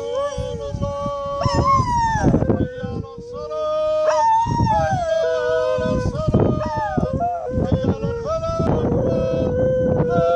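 A dog howling in long, wavering notes along with a man chanting the call to prayer (adhan); the two voices often sound at the same time.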